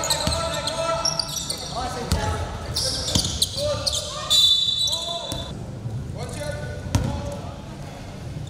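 A basketball dribbled on a hardwood gym floor, with sneakers squeaking and players' voices shouting in the echoing hall. About four seconds in, a referee's whistle sounds for about a second.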